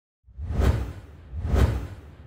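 Two whoosh sound effects about a second apart from an animated logo intro, each swelling and fading with a heavy low rumble beneath.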